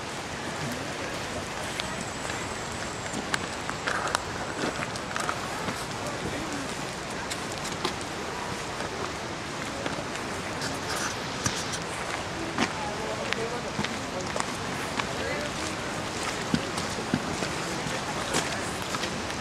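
Steady hiss of falling water in a wet forest, with scattered footsteps and light rustling from someone walking on a dirt trail.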